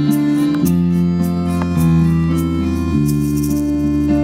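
Live band music led by an electronic keyboard playing sustained chords over a bass line, the harmony changing about every half second.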